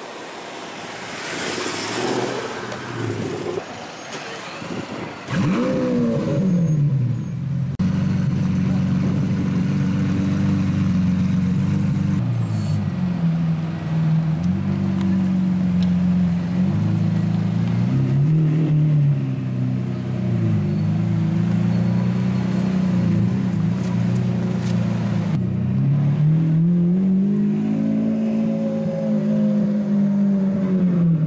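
Lamborghini Aventador Roadster's V12 engine running loudly at low revs in slow traffic. The engine note dips and rises several times and climbs near the end. A short rush of noise comes about two seconds in, before the engine note starts about five seconds in.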